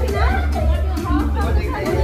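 Several people talking and chattering over loud background music with a heavy bass.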